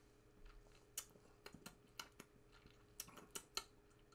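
Faint, scattered small clicks and taps, about eight of them, irregularly spaced over near silence.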